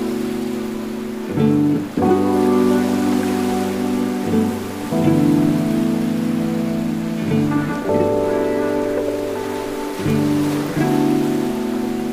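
Lofi chill music: slow, soft sustained chords changing every two to three seconds, over a steady hiss.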